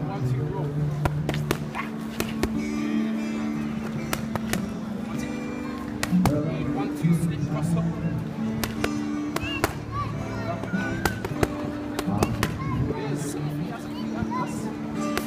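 Boxing gloves striking focus mitts, a series of sharp slaps at irregular intervals, over background music with sustained notes.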